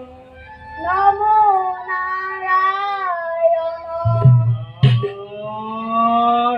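A high voice sings long, wavering lines of Assamese bhaona verse. A low thud and a sharp knock come about four to five seconds in.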